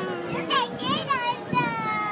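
A young child's high voice: a long drawn-out call trailing off and falling in pitch at the start, then several short excited squeals.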